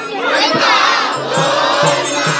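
A crowd of worshippers shouting out together, many voices swelling loudly about half a second in, with low thuds beating underneath.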